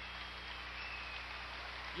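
Arena crowd applauding, a steady patter of many hands clapping.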